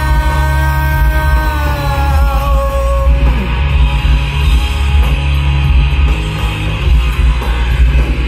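Rock music with electric guitars and a heavy, steady low end; one long held note stands out over the first three seconds or so, dipping slightly before it fades.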